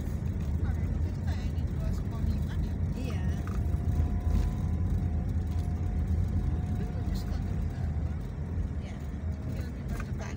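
Low, steady rumble of engine and road noise heard from inside a car driving slowly through town traffic. A faint held tone comes in about three seconds in and fades out near the end.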